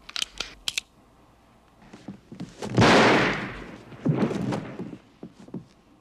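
A single gunshot on a film soundtrack, loud and sudden about three seconds in, with a long echoing decay. A few sharp clicks come before it, and quieter low sounds follow about a second later.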